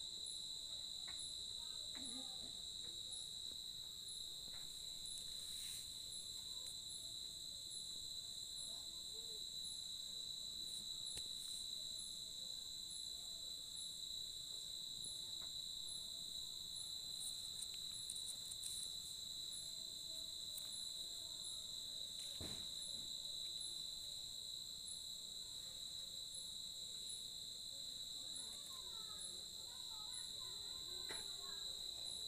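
Night-time crickets trilling in a steady, unbroken high drone, with a higher insect chirp repeating about two or three times a second above it.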